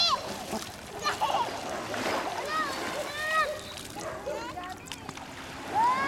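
Children's high voices calling and squealing, with water splashing as they play in shallow water.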